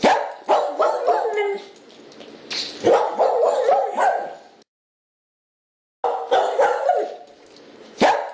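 Repeated short animal calls in quick succession. They cut off suddenly about four and a half seconds in and start again about a second and a half later.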